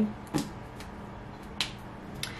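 A few light, sharp clicks, one about a third of a second in and a crisper one about a second and a half in, over faint room tone.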